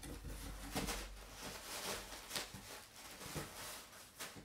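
Cardboard shipping box being handled, its flaps folded and rubbed by hand, giving a series of short scrapes and rustles.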